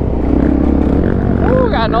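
Suzuki DRZ400SM supermoto's single-cylinder four-stroke engine running while riding, its note swelling slightly and settling in the first second. A man's voice comes in near the end.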